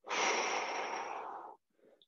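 A man taking one big, audible breath, starting suddenly and fading out after about a second and a half.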